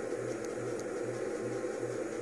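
Steady room background noise: a low hum that pulses about four times a second, under a faint hiss.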